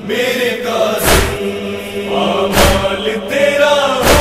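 Nauha lament chanted by voices in a slow, drawn-out melody. Heavy thumps keep the beat, about one every second and a half.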